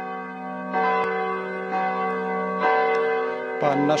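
Church bells ringing, with new strokes about a second in and again near three seconds in, each ringing on in long overlapping tones.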